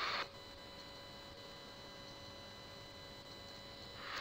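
Faint steady background hiss with a few thin, steady high whining tones: the recording's electrical noise floor, with no other sound.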